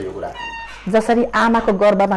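A woman speaking in a drawn-out, fairly level voice, starting about a second in, after a brief high-pitched tone.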